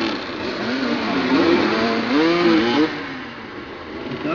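Several motoball motorcycles revving up and down at close quarters, their engine notes rising and falling over one another. The notes are loudest in the middle and ease off in the last second.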